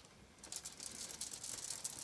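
A paintbrush scrubbing and mixing oil paint on a palette covered in crumpled aluminium foil. It makes a faint, rapid scratchy crackle that starts about half a second in.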